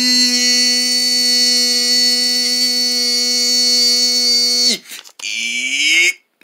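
A single long held note, steady in pitch and buzzy, lasting about five seconds before it cuts off, followed by a short falling tone near the end.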